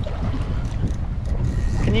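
Strong wind rumbling on the microphone over choppy water around a small open boat, a steady low buffeting with faint light knocks.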